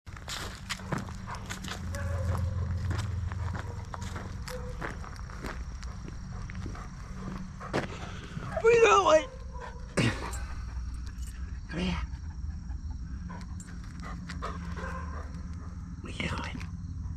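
Footsteps of a person and a large dog walking on an asphalt path scattered with dry leaves, with many short clicks and a low rumble of handling throughout. About nine seconds in comes a short, loud vocal sound with a wavering pitch, then a sharp falling sweep a second later.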